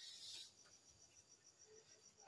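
Faint cricket chirping, a thin high note pulsing evenly, over near silence.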